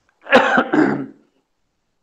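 A man clearing his throat: one rough burst of about a second, with a short second push near its end.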